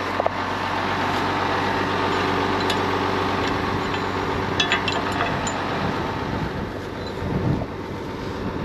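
Tractor diesel engine running steadily at a constant speed, with a few light metallic clicks from the cultivator's adjustment pins being handled about two and a half and five seconds in.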